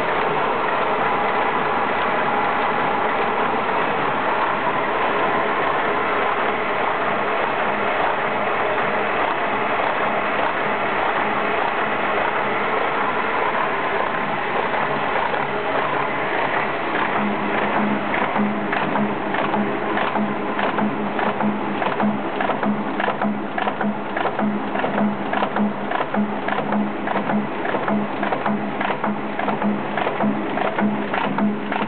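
MBO T800 paper folding machine running, a steady mechanical whirr of rollers and gears. After about seventeen seconds a regular beat of about two strokes a second and a low hum join in.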